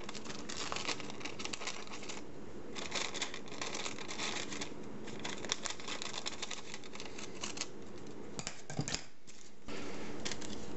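Small scissors cutting through tracing paper: a fast run of snips and paper rustle, with a short pause about two seconds in and another near the end.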